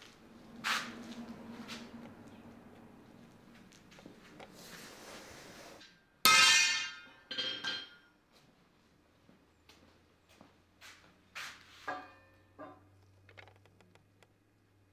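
Wagon ironwork and wood being handled on a shop bench: knocks and taps, with a loud ringing metal clang about six seconds in and a second, smaller ring about a second after it, then a run of lighter knocks.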